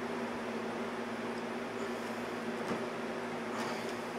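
Steady low machine hum, with a faint tap about two-thirds of the way through.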